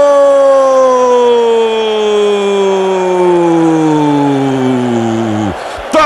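Brazilian football radio commentator's long drawn-out call of "Gol!", one held note sliding slowly down in pitch and breaking off about five and a half seconds in.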